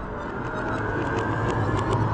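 Cinematic logo-intro sound effect: a low rumble slowly swelling under the fading ring of a boom, with a few faint high ticks sprinkled through it.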